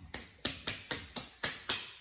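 A quick run of about eight sharp clicks, roughly four a second, from work at the head during a haircut.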